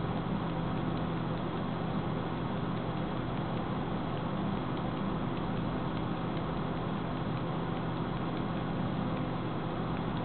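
Desktop PC's cooling fans running steadily with a low hum as the computer restarts and boots.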